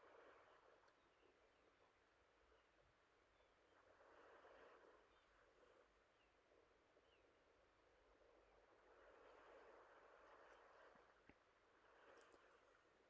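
Near silence: faint room tone with three soft, brief swells of hiss.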